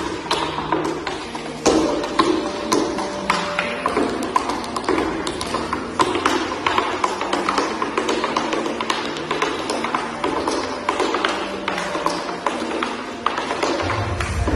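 Tap shoes' metal taps striking a wooden floor in fast rhythmic footwork: a dense, irregular run of sharp clicks.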